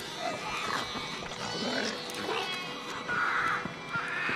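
Film creature sound design: overlapping squeaky, cat-like calls from several young Tharks, the green Martian creatures, many sliding up and down in pitch, with a louder rasping call about three seconds in.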